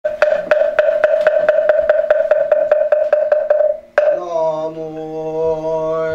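A moktak (Korean Buddhist wooden fish) struck in a steady roll of about four strokes a second, each with a hollow ringing note, quickening and fading away: the traditional roll that opens a chant. After a single final stroke, a man's voice begins chanting in long held notes.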